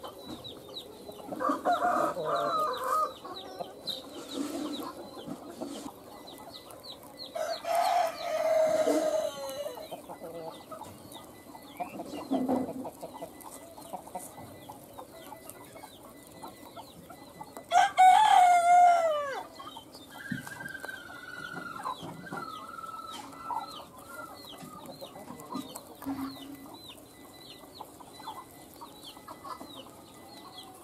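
Chickens clucking and a rooster crowing several times; the loudest crow comes a little past halfway and ends on a falling pitch. Faint short high chirps run underneath.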